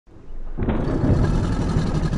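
A low rumbling sound effect that swells in within the first half second and then holds steady.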